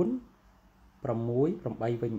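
Speech only: a lecturer talking in short phrases, with a brief pause of about a second between them.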